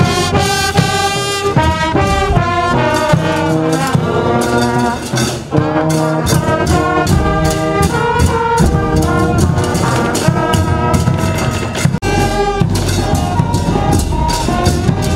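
Marching brass band playing a tune: trumpets, saxophones and a euphonium sustain the melody over a steady percussion beat. The sound cuts out for an instant about twelve seconds in.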